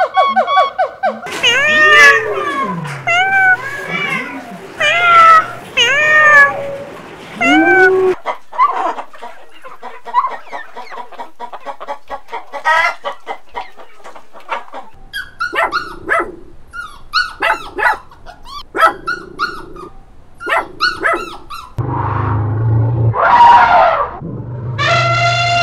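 A run of different animal calls: a series of arching, pitched calls in the first seconds, then short chicken clucks and clicks through the middle, and a loud rising call over a low rumble near the end.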